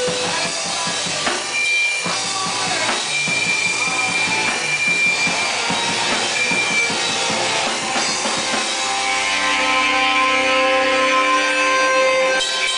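Live rock band playing loud: a drum kit pounding fast with electric guitar over it. About nine seconds in the drumming thins and held tones ring out.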